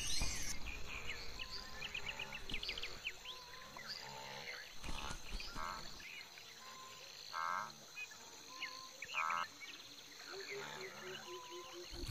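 Quiet tropical forest ambience: a chorus of small chirps from insects and frogs, with a few short buzzing trills.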